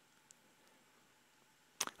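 Quiet room tone during a pause in speech, with a faint click about a third of a second in and another brief click just before the voice resumes near the end.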